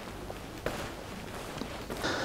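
A few faint footsteps on a tiled showroom floor, as a person walks off, over a low room hiss.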